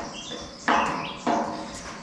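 Bird chirps, a few short calls.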